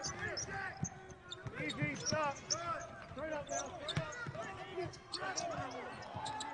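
Live basketball court sound: a ball dribbling on the hardwood floor with scattered sharp bounces, and sneakers squeaking in short rising-and-falling chirps as players cut and shuffle. Faint shouts from the players come in among them.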